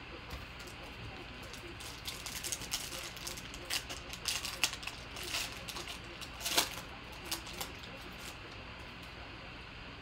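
Foil trading-card pack crinkling and being torn open by hand: a run of sharp crackles lasting about five seconds in the middle, quieter handling before and after.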